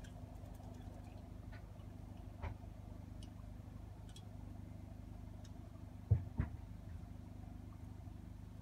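A steady low mechanical hum, like a running motor, with two short thumps about six seconds in and a few faint clicks.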